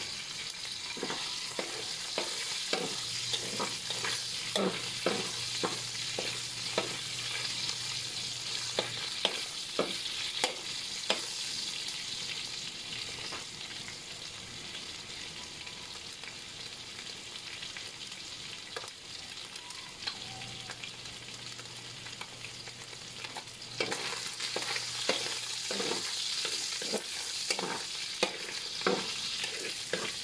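Meat sizzling in oil in a large aluminium wok, with a spatula scraping and knocking against the pan as it is stirred during roughly the first twelve seconds and again over the last six; in between the sizzle carries on alone. A low hum comes and goes twice.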